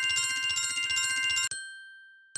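Electronic chime sound effect from the Lightning Dice casino game, played as lightning multipliers are assigned: a rapid, bell-like trill of high tones. It cuts off about one and a half seconds in and rings away.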